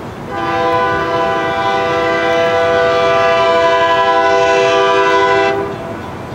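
Nathan K3LA five-chime air horn on a Pennsylvania Railroad EMD E8A locomotive sounding one long blast of about five seconds, a steady multi-note chord that cuts off cleanly, from the approaching train.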